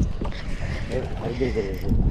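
Wind rumbling on the microphone on an open boat at sea, with faint voices talking in the background.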